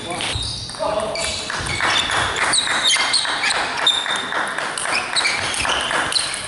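A table tennis rally: the celluloid ball clicking off the bats and bouncing on the table, in a large, echoing sports hall.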